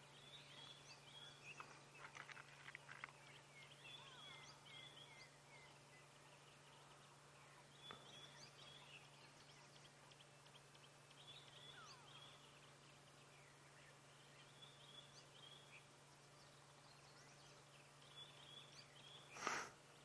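Near silence of the bush with faint bird calls: short, high chirps repeating every second or so, over a low steady hum. A brief louder noise comes just before the end.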